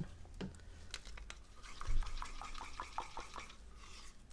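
Acrylic pouring paint being stirred in a small plastic cup to work in a little added silicone: soft wet scraping with small squeaky clicks, and a dull thump about two seconds in.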